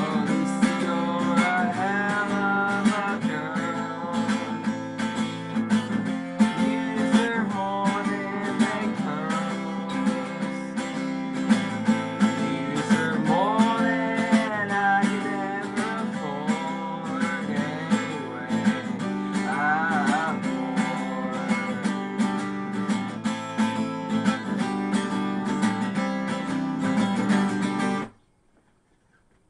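Acoustic guitar strummed hard and fast in a steady folk-punk rhythm, ending abruptly at the close of the song.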